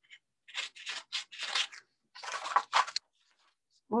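Paper scraps rustling as they are handled and shuffled, a run of short rustles for about a second and a half, a brief pause, then a second flurry.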